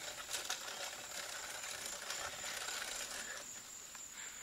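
Faint outdoor background: a steady, thin high-pitched tone over a soft even hiss, with a few light clicks.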